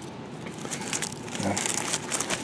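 Dry garlic stalks, soil and landscape fabric rustling and crackling as a garlic bulb is pulled up by hand through a hole in the ground cloth: a run of small crackles that grows denser after about half a second.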